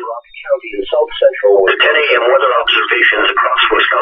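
Speech from a weather radio's speaker: the NOAA Weather Radio broadcast's voice reading the weather report, with a brief pause just after the start.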